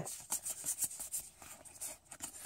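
A stack of Pokémon trading cards being handled and fanned out in the hands, the cards sliding and flicking against each other in a string of quick, light clicks and rustles.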